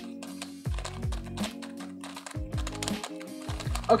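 Rapid plastic clicking and clacking of an X-Man Galaxy V2 LM megaminx being turned for its first turns out of the box. It feels a little scratchy and stiff, its tensions set tight.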